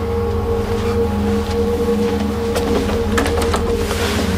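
Background music of sustained, held low chords over a deep drone, with a few light clicks in the last second or so.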